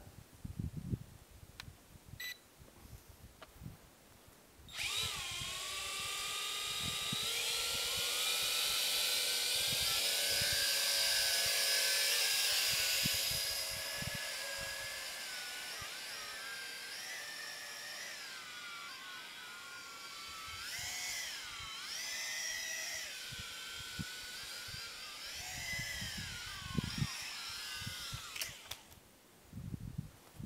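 Small quadcopter drone's electric motors and propellers spinning up about five seconds in with a high whine that rises as it lifts off. It is loudest early in the flight, then wavers up and down in pitch as the throttle changes, and cuts out shortly before the end.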